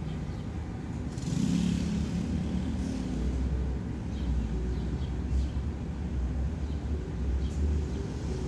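Motorcycle engine running, heard as a steady low rumble that gets stronger about three seconds in.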